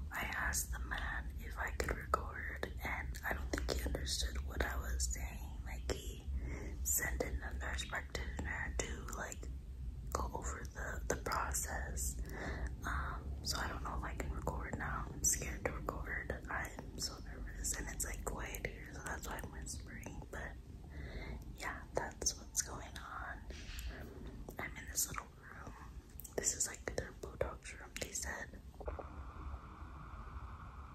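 A woman whispering close to the microphone, with a low steady hum underneath that fades out near the end.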